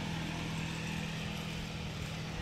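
A steady low hum of a running motor or engine, holding one pitch, under a light even background hiss.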